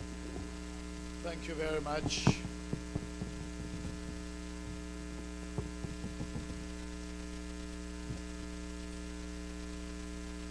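Steady electrical mains hum from the church's sound system. A short burst of voice with a hiss comes about a second and a half in, and a few faint clicks follow.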